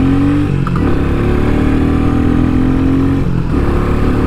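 Royal Enfield Meteor 350's single-cylinder engine accelerating through the lower gears, its note rising steadily, then dropping briefly at two upshifts, about half a second in and about three and a half seconds in, before climbing again.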